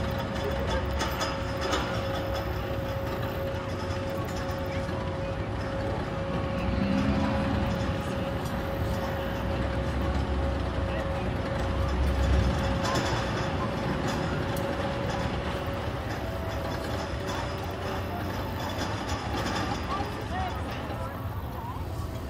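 Roller coaster train being hauled up its chain lift hill: the lift running with a steady hum and a clatter of clicks from the ratchet-type anti-rollback mechanism.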